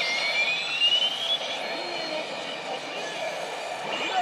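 Sengoku Pachislot Hana no Keiji slot machine playing a sound effect during its screen animation: a rising whoosh, with a high tone gliding steadily upward over the first second and a half. A steady hall din runs underneath.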